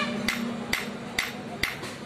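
Blacksmith's hand hammer striking a red-hot steel vegetable-knife blade on an anvil: four even blows about two a second, each with a short metallic ring.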